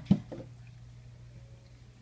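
One short, sharp knock just after the start, with a couple of softer taps, then quiet indoor room tone over a steady low hum.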